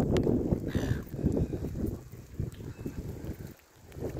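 Wind buffeting a phone's microphone outdoors, an uneven low rumble broken by irregular soft thumps, with a faint tick or two; it eases off briefly near the end.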